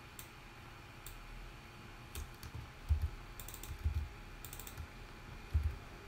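Computer keyboard typing: scattered, irregular keystrokes, with a few quick runs of keys past the middle.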